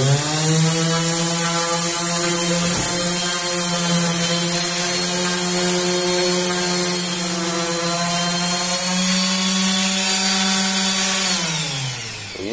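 Makita M9202B 5-inch random orbital sander running steadily on a rough, unsanded wood plank: a steady motor hum with the hiss of the sanding disc on the wood. Near the end the hum falls in pitch as the sander is switched off and winds down.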